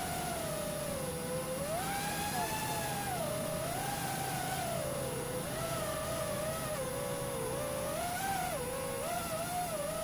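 FPV quadcopter's electric motors and propellers whining, the pitch rising and falling as the throttle changes.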